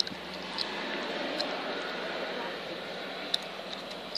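Steady outdoor background noise with faint, distant voices and a few light clicks.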